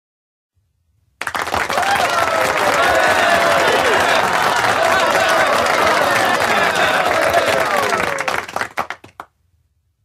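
An audience applauding, with many voices cheering and calling out over the clapping; it breaks out about a second in and dies away in a few last claps near the end.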